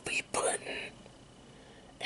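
A man whispering for about the first second, then only faint room tone.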